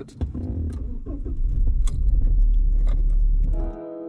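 Car keys jangling as the ignition is turned, then the car's engine starts and runs with a low, steady sound that grows louder over the next two seconds. Near the end it cuts to music with steady held notes.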